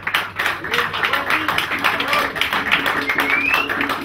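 Music playing with dense audience clapping, and a short rising whistle near the end.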